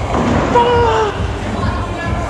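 Bowling pins clattering as the ball hits them. Then a man's voice calls out in one drawn-out exclamation that falls slightly in pitch.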